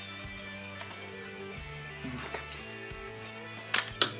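Background music with steady held notes; about three and a half seconds in, one sharp plastic clack as the LEGO motorcycle drops out of the Quinjet's release bay onto the table.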